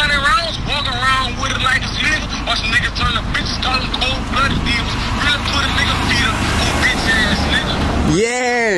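People talking, words indistinct, over a low steady rumble.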